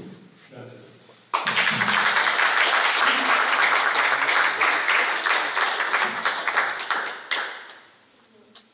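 Audience applauding. The clapping breaks out suddenly about a second in, holds steady for about six seconds, then dies away near the end.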